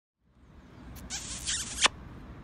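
A Shetland pony's muzzle right up against the microphone: a scratchy, hissing snuffle-and-rub noise lasting under a second, cut off by a sharp knock near the end.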